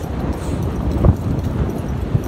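Hoofbeats of several horses cantering on sand, an uneven run of dull thuds, with one louder thud about a second in.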